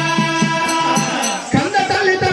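Oggu katha folk song: a singer holds one long note over regular dollu drum beats, about four a second; the note breaks off about a second and a half in and a new sung phrase begins.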